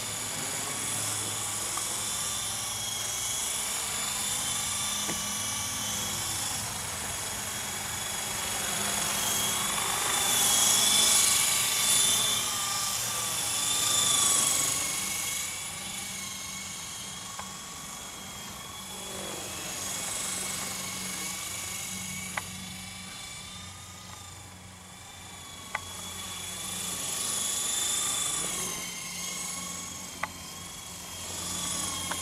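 Esky Honeybee CP2 electric RC helicopter in flight: a high motor-and-rotor whine that rises and falls in pitch and swells loudest about ten to fifteen seconds in. A couple of sharp ticks come near the end.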